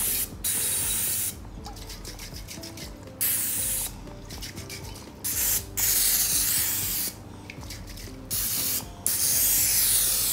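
Aerosol can of palm oil cooking spray hissing onto a nonstick grill plate in about seven short bursts, each under a second or two, with brief pauses between them.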